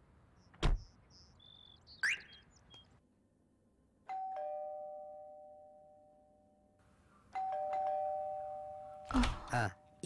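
Two-note ding-dong doorbell chime, a higher note falling to a lower one, rung twice about three seconds apart, each ring fading out slowly. A single sharp thump comes near the start.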